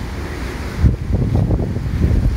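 Wind buffeting the microphone in gusts, with a strong gust about a second in, over the steady rush of water discharging from the reservoir weir.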